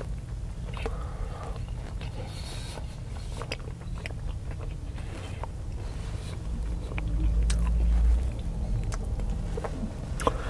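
Close-miked chewing of a breakfast chaffle sandwich: soft mouth sounds and small clicks over a steady low rumble. The rumble swells louder for a second or so about seven seconds in.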